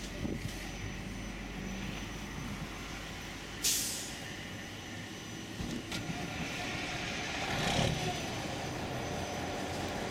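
Steady road-traffic noise. About three and a half seconds in comes a short, sharp hiss of air from a truck's air brake. Near the end a passing vehicle swells and fades.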